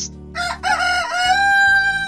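A rooster crowing once, cock-a-doodle-doo, starting about a third of a second in, with the last note held long and steady.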